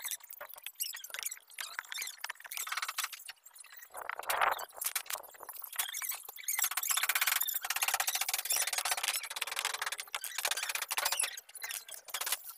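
Fast-forwarded sound of a screwdriver backing screws out of a plastic washing-machine cabinet: a rapid jumble of clicks and high-pitched tones, raised in pitch by the speed-up.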